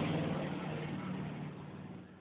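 A steady low hum with a haze of noise behind it, fading away gradually.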